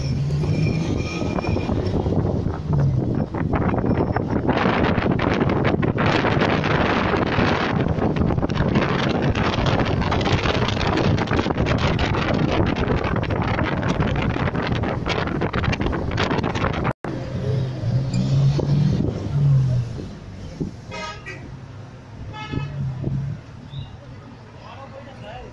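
Car travelling with loud wind buffeting and road noise at the microphone. After a sudden break it gives way to quieter street traffic, with a vehicle horn tooting twice near the end.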